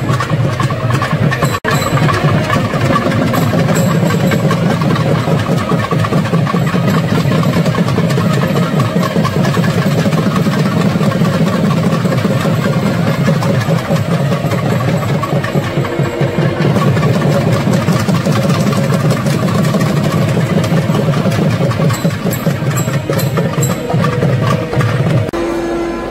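Temple drum ensemble playing a fast, continuous roll, with a short break about a second and a half in.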